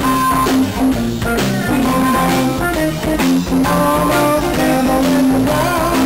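Live blues-rock band playing an instrumental passage: electric guitars over a walking bass line and drum kit, with a harmonica.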